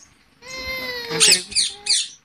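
Rose-ringed parakeet giving one long, slightly falling whining call, followed by a few short harsh screeches near the end.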